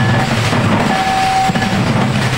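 A troupe of two-headed barrel drums beaten together with cymbals, the strokes running into a loud, dense, continuous wash.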